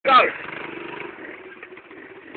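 Suzuki LT160 quad's small single-cylinder four-stroke engine running with a steady, evenly pulsing note during a burnout. A brief loud shout comes right at the start.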